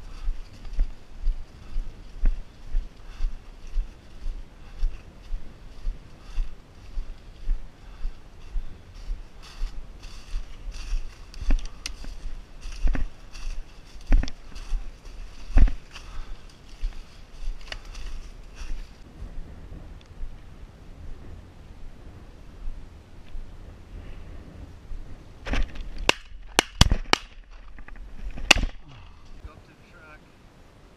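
Footsteps crunching through dry corn stubble at a steady walking pace, about two steps a second. Near the end, several sharp shotgun reports in quick succession.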